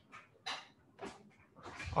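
A few faint, short scratches of a stylus writing by hand on a tablet screen, about every half second.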